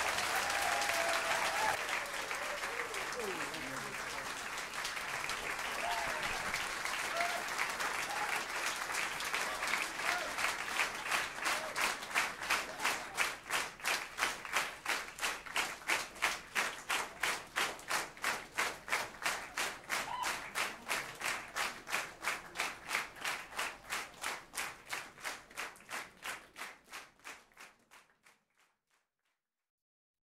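Live audience applauding with some cheering, the clapping settling into a steady unison rhythm of about two to three claps a second and then fading out near the end.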